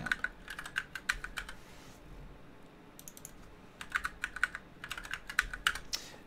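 Typing on a computer keyboard: runs of quick keystrokes with a pause of about a second near the middle.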